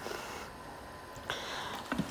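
Quiet room tone, then a short soft hiss lasting about half a second near the end, with a small click just after it.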